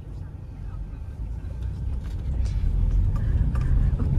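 Car cabin road noise: a low engine and tyre rumble that grows steadily louder as the car pulls away and gathers speed.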